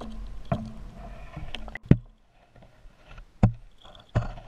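Underwater recording of a chatterbait (bladed swim jig) being retrieved: muffled water noise with a few sharp knocks, the loudest about two seconds in and another near the end.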